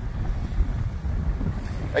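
Wind buffeting the microphone in gusts: an uneven low rumble.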